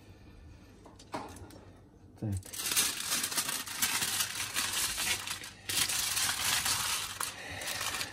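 Aluminium kitchen foil crinkling and crackling as it is folded up by hand into a boat around a fish, starting about two and a half seconds in after a quieter opening with a couple of light taps.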